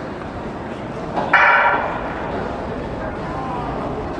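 Starting signal of a 100 m sprint: one sudden, harsh burst about a second and a half in, lasting about half a second, that starts the race.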